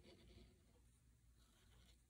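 Faint scratching of a pen tip drawing strokes on paper, once at the start and again in the second half.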